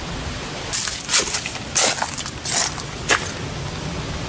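Footsteps crunching on dry ground, about five steps in a loose walking rhythm, over a low rumble of wind on the microphone.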